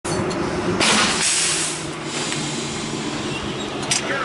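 Rhaetian Railway locomotive running with a steady hum at a train coupling, with two bursts of air hissing about a second in and a short click near the end.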